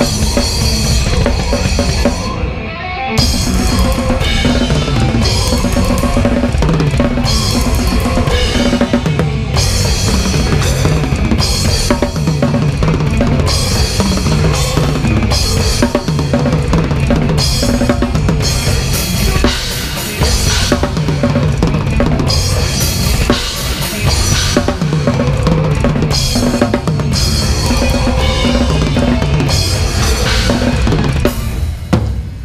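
Acoustic drum kit played fast in a live technical death metal set, heard close from the drummer's seat: bass drum, snare and cymbals over the band's guitars and bass, with a brief break in the music about two and a half seconds in.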